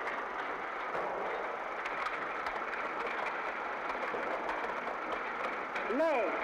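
Steady mechanical clatter of workshop machinery with faint scattered clicks, heard through the muffled, narrow sound of an old film soundtrack.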